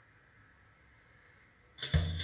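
Near silence with faint room tone, then, near the end, music with a drum kit starts abruptly and loudly, played through a Kenwood R-SG7 Class A stereo amplifier and its loudspeakers as a sound test.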